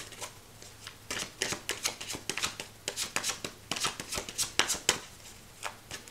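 A deck of tarot cards being shuffled by hand: a quick, irregular run of short card clicks.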